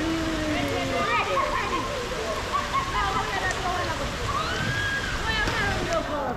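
People's voices talking and calling over a steady rush of water.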